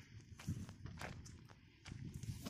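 Faint footsteps on soil with ginger leaves rustling as they are brushed: a few soft steps and scuffs.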